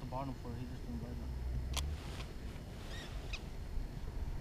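Faint, muffled voice in the first second or so, then two sharp clicks about a second and a half apart from an ice angler handling his rod, reel and catch.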